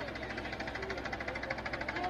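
An engine running steadily with a rapid, even knocking beat.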